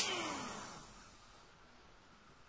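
Hand-held hair dryer switched off, its fan motor winding down with a falling whine that fades out over about a second.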